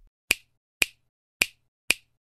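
Four sharp finger-snap clicks, evenly spaced about half a second apart, with silence between them.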